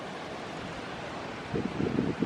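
Steady outdoor wind noise with distant surf, and wind buffeting the microphone in low rumbles in the last half second.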